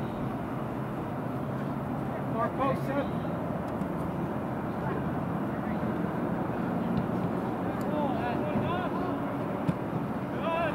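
Short distant shouts from players on a soccer field, twice, over a steady low outdoor rumble, with one sharp knock near the end.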